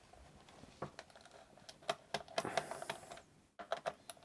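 Faint, irregular clicks and light scraping of a small screwdriver backing a screw out of a laptop's plastic underside.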